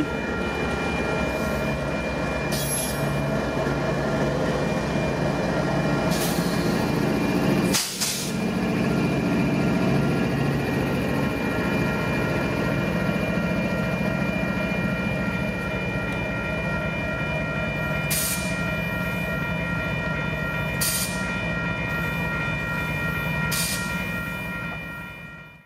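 A freight train rolling past with a steady rumble of wheels and cars, along with the diesel engine of a Kansas City Southern GE locomotive working as a distributed-power unit. A thin, steady high squeal runs through it. The sound drops out briefly about 8 seconds in.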